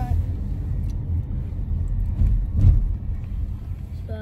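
Low, steady rumble of road and engine noise inside a moving car's cabin, with a brief knock about two and a half seconds in.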